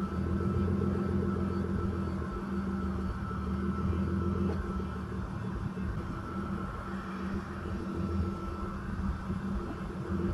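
Nissan Laurel C33's RB20DET turbocharged straight-six engine running steadily at low revs, with a faint steady high whine over it.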